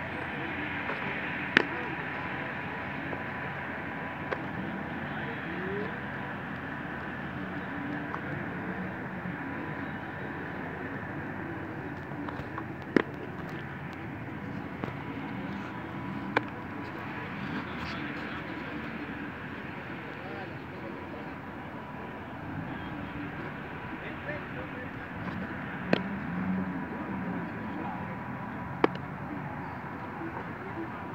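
Steady outdoor background with faint voices, broken by several sharp pops of a baseball smacking into a leather glove.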